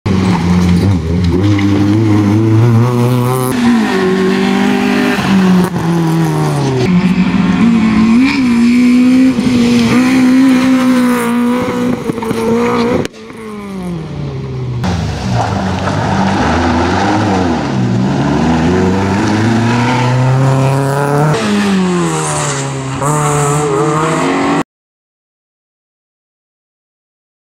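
Citroën C2 rally car driven hard, its engine revving up and dropping back again and again through gear changes and corners. About 13 seconds in the sound cuts sharply and the engine builds up again, then it stops abruptly near the end.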